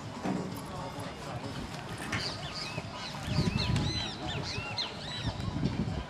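Birds calling: a rapid run of short, harsh, arching calls, starting about two seconds in and stopping shortly before the end, over a low background rumble.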